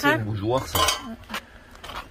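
Glassware and other household items clinking and knocking together as they are lifted out of a cardboard box and set down: a few sharp clinks in the first second, another about two-thirds of the way through.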